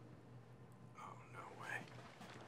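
Quiet room tone, then faint whispering from about a second in.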